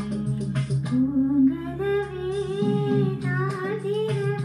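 A woman singing into a microphone over an instrumental backing track, her voice rising about a second in and then holding one long wavering note over a steady beat.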